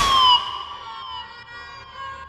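Ending of a hip-hop beat: the bass stops about a third of a second in, and a few held high notes slide slowly down in pitch as the music fades out.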